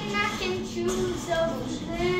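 Singing in a high, child-like voice, a melody held and changing pitch.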